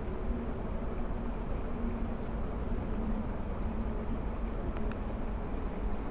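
Steady outdoor background noise with a low, even hum running under it. A single light click sounds about five seconds in, from the plastic spice container being handled.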